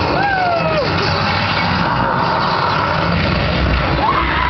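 Steady rumble and hiss of the ride's elevator cab and its effects, with one falling wail in the first second.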